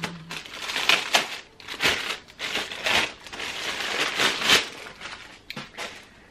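Clear plastic packaging bag crinkling and rustling in irregular bursts as a purse is pulled out of it, dying down after about five seconds.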